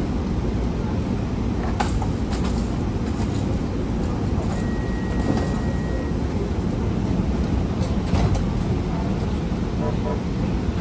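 LA Metro P2550 light rail car running along the track, heard from inside the driver's cab: a steady rumble with a few sharp clicks, and a faint high steady tone for about a second and a half in the middle.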